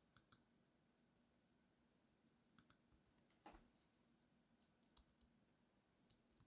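Near silence: room tone with a few faint, short clicks, two near the start, two more about two and a half seconds in and a small cluster near the end.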